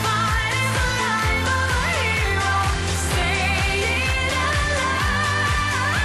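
A female singer with backing vocals sings an up-tempo pop song over a steady dance beat.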